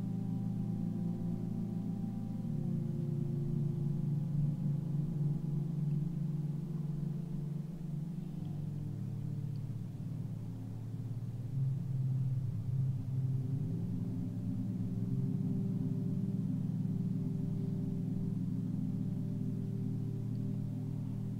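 Ambient meditation background music: a layered low drone of held tones whose pitches shift slowly every few seconds, with no strikes.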